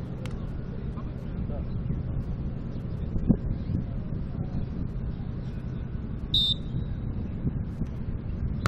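Steady wind noise on the microphone with distant voices; about three seconds in, a single thud of a volleyball being struck, and a brief high-pitched tone about six seconds in.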